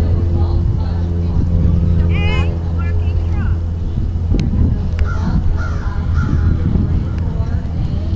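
Steady low motor-like hum throughout, with a short burst of bird calls about two seconds in and faint, indistinct voices later on.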